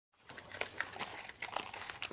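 Pen writing on paper, a run of small irregular scratches and ticks as notes are taken.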